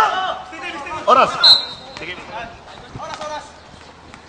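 A basketball bouncing on a hard court, a few separate thuds, with a short high referee's whistle blast about a second and a half in.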